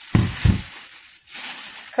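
Plastic shopping bag crinkling as it is handled, with two short thumps in the first half-second and the rustling dying away after about a second.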